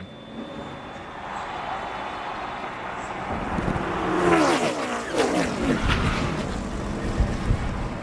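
A pack of NASCAR stock cars' V8 engines at racing speed, the noise growing louder. From about three and a half seconds in, several engine notes slide downward in pitch as the pack crashes into the wall. Sharp knocks of impact come near the end.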